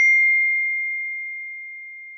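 A phone's message notification chime: one bright ding that rings on as a single high tone, fading slowly.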